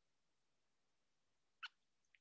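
Near silence, with a single short click about three-quarters of the way through: a computer click starting playback of the embedded video.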